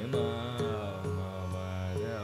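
Carnatic classical music in raga Thodi: a melody full of gliding ornaments over a steady tanpura drone, with light drum strokes about every half second.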